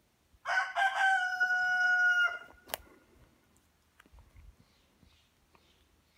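A rooster crowing once: a call of nearly two seconds starting about half a second in and ending on a long held note. A single sharp click follows shortly after.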